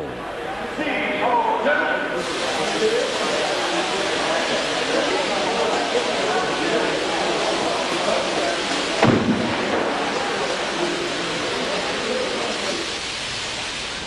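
Carbon dioxide jets blasting a steady, loud hiss from about two seconds in. A single sharp thump sounds about nine seconds in.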